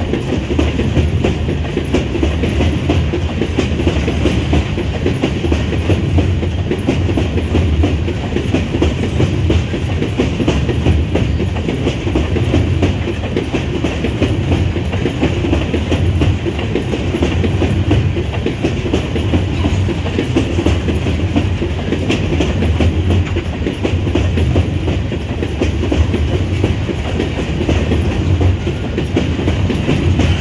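Empty iron-ore gondola wagons of a freight train rolling past close by: a loud, steady rumble with wheel clatter on the rails.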